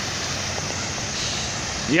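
Steady splashing of a fountain's water jets falling into its basin.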